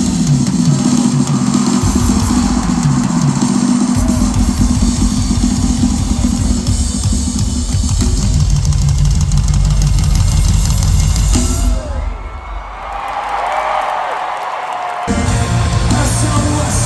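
Live rock drum kit played loud through an arena PA, heavy kick and toms with some guitar underneath. It stops about twelve seconds in, leaving a few seconds of crowd noise, then the full band comes back in loud near the end.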